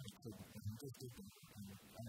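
Faint voices, speaking or softly singing, far below the level of the surrounding conversation.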